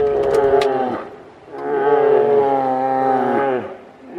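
A large animal giving two long moo-like calls, the first about a second long and the second about two seconds, each dropping in pitch as it ends.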